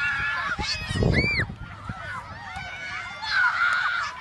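Children shrieking and yelling over one another while playing dodgeball: high-pitched cries that rise and fall, the loudest about a second in, with a laugh.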